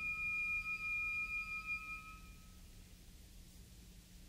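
A single high note held steady in the orchestra, fading out a little over two seconds in, leaving a brief pause in the music with only a faint low hum and hiss from the old live recording.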